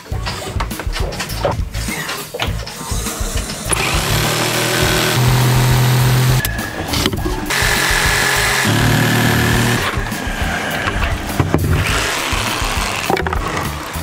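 Background music, with a corded Ryobi jigsaw cutting plywood: its motor runs in a long stretch from about four to ten seconds in.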